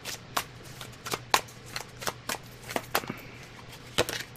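Tarot cards being shuffled by hand: a run of light, irregular clicks and flicks, a few a second.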